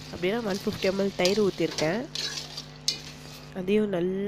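Steel ladle stirring and scraping frying masala in an aluminium pressure cooker, the masala sizzling, with a voice talking over it for much of the time.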